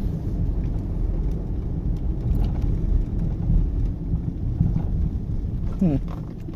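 Steady low road-and-engine rumble inside a car's cabin while driving, with a short hum from the driver near the end.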